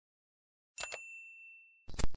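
A bright notification-bell ding, struck with a click just before a second in, rings out and fades over about a second. A short, loud thump follows near the end.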